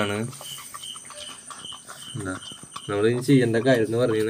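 A man's voice speaking Malayalam at the start and again from about three seconds in. In the quieter gap between, a faint, evenly repeating high chirp can be heard.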